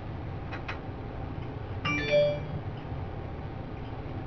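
Two light clicks, then a short electronic chime-like tone from a cell phone about two seconds in.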